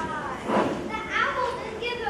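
Children's voices speaking on stage, high-pitched, several short phrases one after another.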